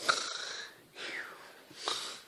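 A child making loud, exaggerated breaths close to the microphone, like pretend snoring. A sharp intake that starts with a click alternates with a breathy exhale that falls in pitch, in a steady cycle of about one and a half seconds.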